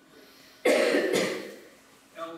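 A person coughing: two quick coughs a little over half a second in, the first the loudest, then fading.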